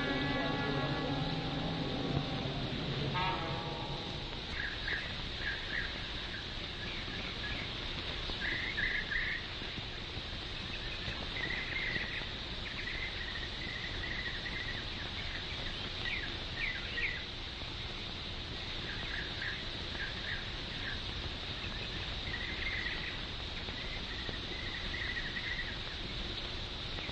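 Birds chirping in short bursts every few seconds over the steady hiss of an old film soundtrack. A passage of music dies away in the first few seconds.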